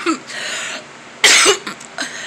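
A woman coughing into her hand: a short cough at the start and a louder, harsher one about a second and a quarter in. She puts the cough down to an allergy to bleach that she has been spraying.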